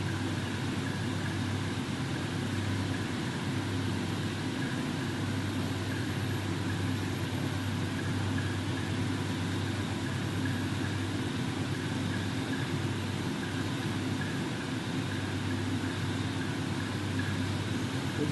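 A steady, unchanging low droning hum under an even hiss.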